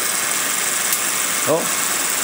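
A home-made Van de Graaff–Wimshurst hybrid generator running: its motor-driven belt of pantyhose with copper-tape pieces makes a steady whirring hiss. About a second in there is a single sharp snap, a spark jumping between the two aluminium spheres as the arcs return once the belt is released.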